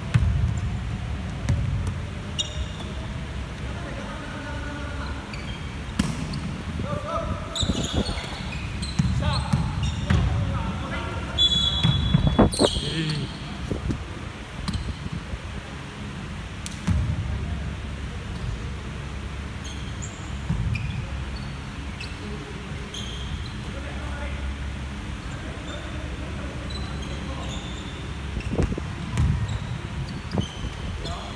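A basketball bouncing and being dribbled on a hardwood gym floor, with irregular thuds that echo in a large hall.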